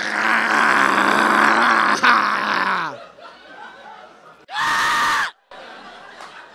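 A man screaming into a microphone: one long raspy held scream of about three seconds, then a second, shorter and shriller scream near the end that cuts off suddenly.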